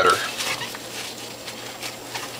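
Hands folding and squeezing a juicing cloth bundle of orange pulp in a glass baking dish: faint rustling and a few light knocks against the glass, over a low steady hum.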